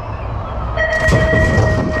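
A BMX starting-gate tone: a steady electronic beep sounds about a second in as the metal gate drops. Wind rush and bike rattle from a helmet-mounted camera follow as the rider sprints off the gate.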